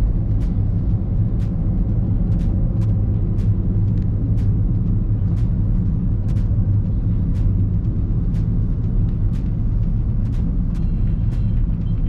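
Steady low rumble of road and engine noise inside a moving car's cabin, with faint regular ticks about twice a second.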